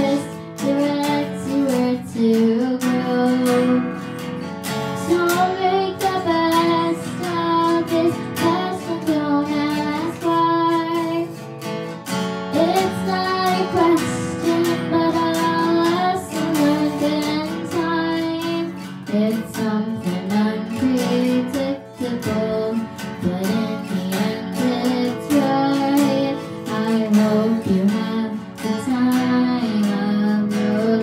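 A girl singing a slow ballad while strumming a steel-string acoustic guitar, voice and guitar together.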